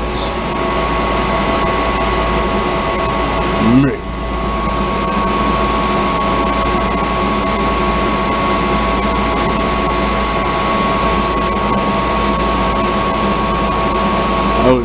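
Steady, loud machinery drone in a mechanical room, carrying a constant high-pitched hum over a wide noise, with a short sound rising in pitch about four seconds in.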